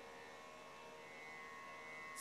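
Near silence: a faint steady hum and hiss.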